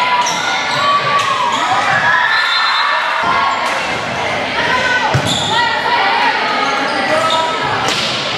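Volleyball rally in a gymnasium: the ball is struck sharply several times amid the shouts and calls of players and spectators, echoing in the hall.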